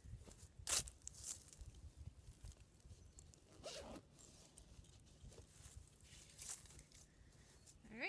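Faint rustling of footsteps and clothing in dry grass as a person gets up and walks off and back, a few brief swishes with the loudest about a second in, over a low rumble of wind on the microphone.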